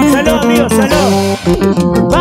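Live band music without singing: an acoustic-electric guitar plays a picked lead melody over keyboard, electric guitar and drums, with a steady bass line.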